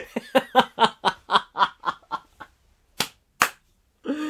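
A man laughing hard, a run of breathy laugh pulses about four a second that fades out after about two and a half seconds. Near the end come two sharp taps about half a second apart.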